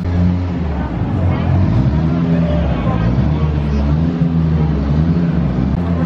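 A heavy vehicle's engine running close by, a low drone whose pitch rises and falls as it revs, over general street noise.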